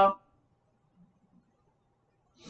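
The tail of a woman's spoken word, then near silence: quiet room tone with a faint steady hum and a couple of tiny ticks.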